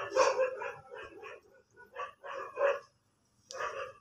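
A dog barking in a string of short barks and yips at uneven intervals.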